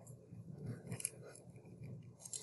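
Faint rustling and scratching of a hand moving on a paper worksheet, with a couple of light clicks about a second in.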